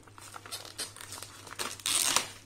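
Clear plastic shrink-wrap crinkling and tearing as it is peeled off a boxed paint set by hand, in irregular crackles that get louder near the end.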